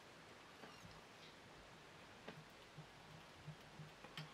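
Near silence, with a few faint, scattered ticks from a whip-finish tool being worked on the thread at the fly's head.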